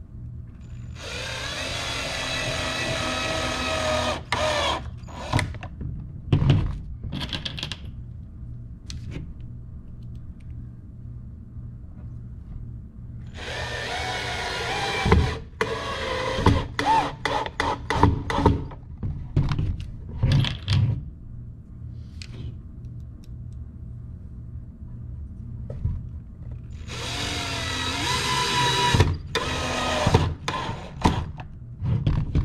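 Cordless drill whining in three long trigger pulls as it works into the pine roof of a wooden bird feeder. Each pull is followed by a few short bursts and clicks.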